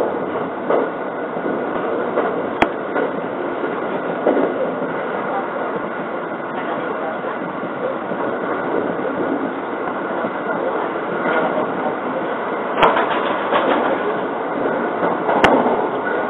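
Interior noise of a JR 681 series electric limited-express train running along the line: a steady rumble of wheels on rail, broken by three sharp clicks.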